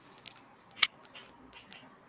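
Irregular light clicks from a computer mouse and keyboard in use, with one sharper click a little under a second in.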